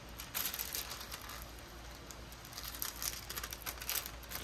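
Clear plastic protective film on a diamond painting canvas crinkling and rustling as hands smooth and press it down, with a few light crackles.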